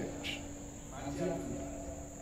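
Faint steady high-pitched trill of crickets over a low steady hum, with a faint voice briefly about a second in.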